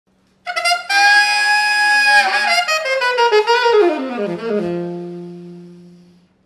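Alto saxophone playing a jazz phrase: a long high note, then a quick run of notes falling to a low note that is held and fades away.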